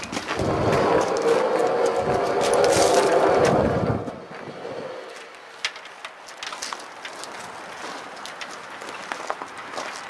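Hand-pulled chain hoist lifting a lathe: the chain rattles and clatters for about the first four seconds, then gives lighter scattered clicks.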